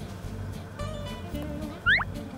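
Background acoustic guitar music, with a short, sharply rising high-pitched chirp from a Singapura cat near the end.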